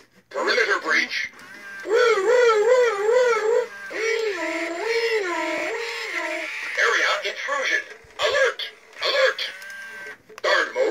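Robosapien V2 toy robot's synthesized voice: a short burst of garbled robotic chatter, then a warbling electronic tone that wobbles up and down a few times a second, a few held tones stepping in pitch, and more choppy robotic chatter near the end.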